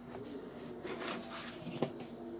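Handling noise from a helmet being turned over in the hands: soft rubbing through the middle and a sharp knock near the end, over a steady low hum.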